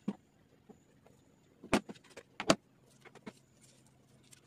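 Crafting tools and materials handled on a tabletop: a few sharp knocks and clicks, one just after the start and the loudest two about a second and a half and two and a half seconds in. A faint low hum comes in near the middle.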